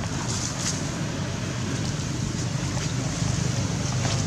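Steady outdoor background rumble and hiss, with a few faint ticks.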